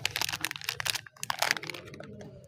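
A Lux soap bar's printed wrapper crinkling and crackling as hands peel it open and slide the bar out, in two runs of rustling with a short pause about a second in, dying away near the end.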